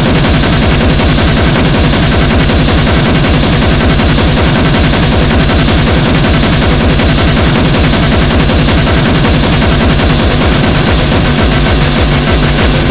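Loud, dense extreme-metal music: a wall of distorted noise over a very fast, unbroken drum pulse that holds at the same level throughout.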